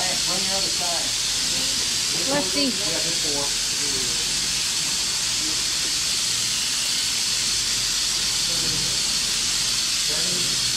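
A steady high hiss throughout, with a few short voice sounds over it about half a second in and again around two and a half to three and a half seconds in.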